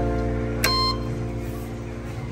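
A single short electronic beep from a self-service Clubcard scanner, the sign that a card has been read, over background music that is fading out.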